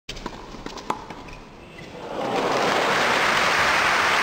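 Intro sound effect for an animated logo: a few sharp clicks over a low hiss, then a rush of noise that swells about two seconds in and holds steady and loud.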